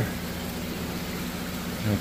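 Steady hiss of moving water with a low steady hum, typical of a large aquarium's pumps and filtration running.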